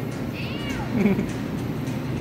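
A toddler's high-pitched squealing call, rising and falling, followed about a second in by a shorter, lower vocal sound.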